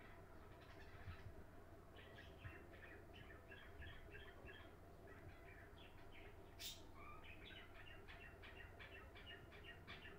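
Near silence: a low steady room hum, with a run of faint, quick chirps through most of it and a single sharp click about two-thirds of the way in.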